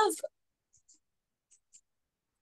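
A spoken word ends just at the start, then near silence with a few faint, tiny clicks.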